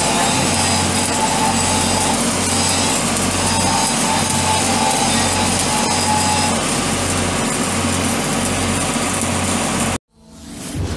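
Stick-welding arc crackling and sizzling steadily as a weld is run on a large steel pipe flange, over a steady low hum.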